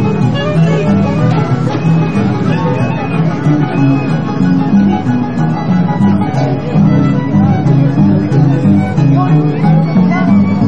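Peruvian orquesta típica del centro playing folk dance music: a section of saxophones carrying the melody over Andean harp and timbales with a drum kit, with steadily repeated bass notes.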